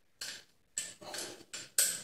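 Small metal parts clicking and clinking as a nut is screwed tight by hand onto a bolt through a metal bracket bar: a run of six or so sharp clicks, each dying away quickly.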